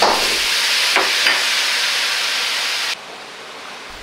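Stir-fry sizzling in a hot wok as a metal ladle tosses pork and mushrooms in oyster sauce, with a couple of ladle scrapes about a second in. The sizzle cuts off suddenly near the end, leaving a fainter hiss.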